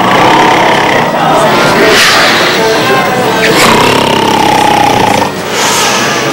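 Loud, rattling motor noise, like an engine running hard, with a steady whine through the middle.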